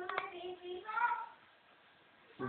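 A high-pitched voice holding a sung or hummed note for under a second, then a shorter note about a second in, with a single sharp click near the start.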